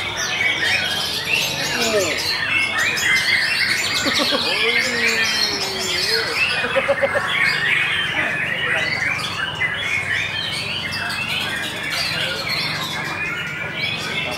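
Many caged songbirds, among them a white-rumped shama, singing over one another in a dense, unbroken chorus of chirps, trills and squawks. A few lower sliding calls come through between about two and seven seconds in.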